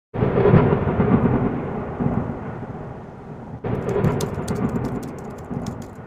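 Thunder sound effect: two claps of rolling thunder, the first at the start and the second about three and a half seconds in, each fading away, with sharp crackling ticks over the second.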